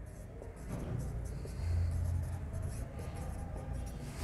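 Marker pen writing on a whiteboard: a run of short strokes and squeaks as letters are written.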